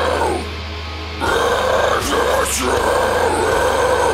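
Deathcore backing track with a harsh guttural vocal over it. A held scream starts a little over a second in and runs on, broken briefly twice.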